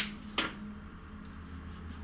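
Two sharp clicks about half a second apart, the first the louder, typical of florist's scissors snipping a flower stem, over a faint steady hum.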